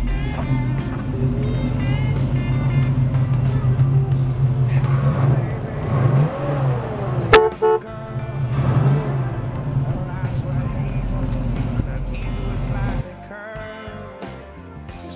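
Chevrolet 327 small-block V8 (L-79) running at idle, its pitch swelling briefly a couple of times in the middle, with one sharp click just past the middle. The engine sound cuts off about a second before the end.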